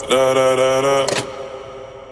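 A song playing, with a voice holding one long sung note for about a second; then it fades and the music goes quiet.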